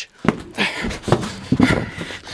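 A man breathing hard, with several short knocks and rattles of handling.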